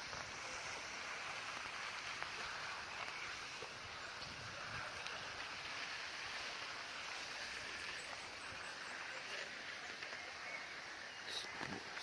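Steady, even outdoor background hiss with no distinct events, and a man's voice starting just before the end.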